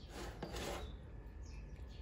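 A metal spoon scraping and scooping cooked macaroni against a plastic container: a rasping scrape lasting about a second, starting just after the start, then fading.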